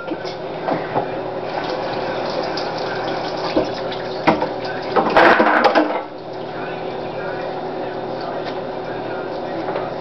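Steady rushing noise with a short louder burst about five seconds in.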